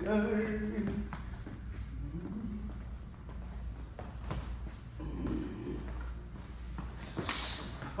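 Two men sparring: hard breathing and short grunts, with shoes tapping and scuffing on a wooden floor. A short, loud hiss of breath comes near the end.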